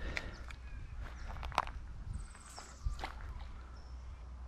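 Faint footsteps and scuffs on a dry dirt bank with a few sharp clicks, over a steady low rumble.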